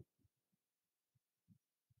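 Near silence, with only a few very faint, short low ticks.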